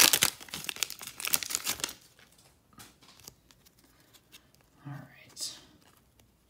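Foil wrapper of a hockey card pack crinkling and tearing as it is ripped open, loud for the first two seconds, then much quieter with only faint clicks.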